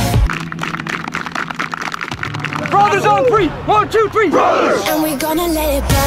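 The song's beat and bass drop out for a few seconds. A quick run of sharp taps follows, then several short shouted calls from voices, and the full music with its bass comes back in near the end.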